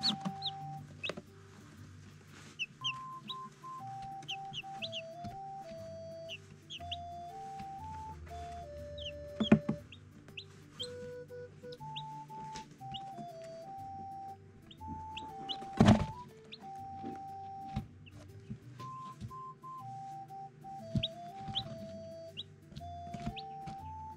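Newly hatched chicks peeping in short, high chirps again and again over background music with a stepping melody. Two sharp knocks cut through, one a little before halfway and a louder one about two-thirds of the way in.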